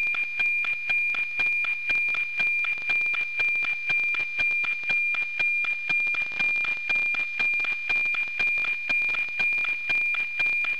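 NOAA 19 weather satellite APT signal, FM-demodulated by an SDR receiver: a steady high-pitched tone with an even ticking about twice a second, the sync pulses that mark each transmitted image line.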